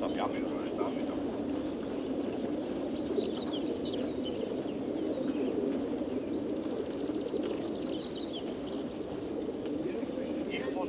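Massed cooing of many racing pigeons crated in a pigeon transport truck, a steady murmur. Small songbirds chirp over it, with a brief fast trill a little past the middle.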